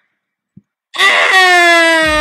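A loud, long wailing cry that starts about a second in and slides slowly down in pitch.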